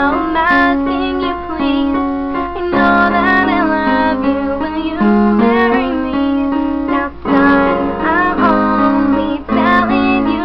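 A woman singing a song while accompanying herself on piano, with sustained chords under the sung melody.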